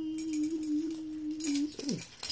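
A drawn-out hummed "mmm" held on one pitch, sliding down at the end, over the light jingle of a set of keys dangling from a lanyard.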